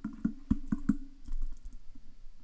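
A quick run of light, sharp taps, about four in the first second, then fainter scattered ones, over a faint low hum that fades about a second in.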